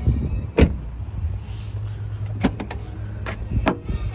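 A BMW 1 Series door thumps shut about half a second in. Then come several sharp clicks and knocks as the hatchback's tailgate is unlatched and lifted, over a steady low background hum.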